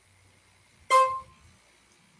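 A single short, buzzy horn-like beep about a second in, lasting about a quarter of a second.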